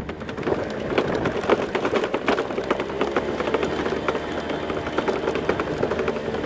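A small motor vehicle's engine running as it rides along a bumpy dirt track, with irregular rattling and knocking throughout.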